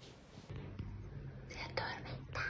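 A woman whispering softly.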